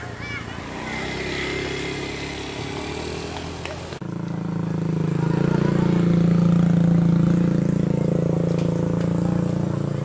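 A nearby engine running steadily. It comes in abruptly about four seconds in, swells for a couple of seconds, then eases slightly. Before it, voices call out across the field.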